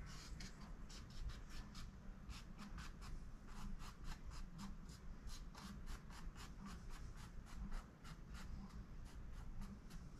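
Small paintbrush dabbing and stroking on canvas: a quick run of short, scratchy bristle strokes, several a second, over a low steady hum.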